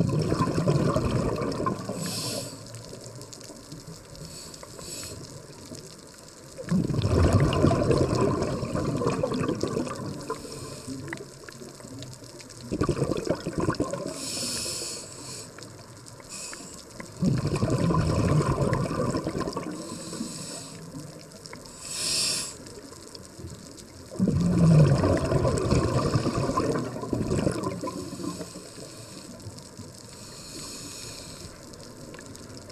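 Scuba diver breathing through a regulator underwater: five exhalations, each a 2-to-4-second burst of bubbles, with short high hisses of inhalation between some of them, in a slow steady cycle.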